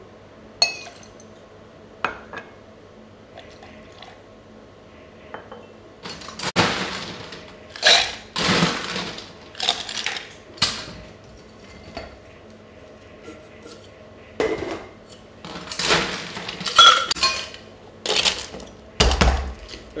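Ice being scooped into a metal cocktail shaker tin, clattering and clinking in several bursts through the second half. A few sharp clinks come first, and a dull thump comes near the end.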